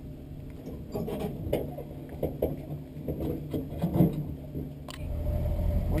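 Engine of a stock 1960 Willys Station Wagon idling steadily, with scattered light knocks and clicks over it; about five seconds in, the engine note grows louder and fuller.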